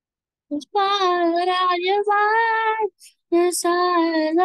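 A young voice singing held, wavering notes without accompaniment. It starts about half a second in and breaks off briefly near the three-second mark before going on.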